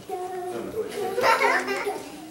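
Children's voices chattering and calling out, with one louder, higher outburst a little past halfway.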